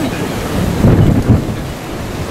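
Wind buffeting the microphone: a low rumbling gust that swells to its loudest about a second in, then eases.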